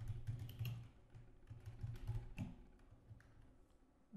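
Typing on a computer keyboard: faint, irregular keystrokes that thin out toward the end.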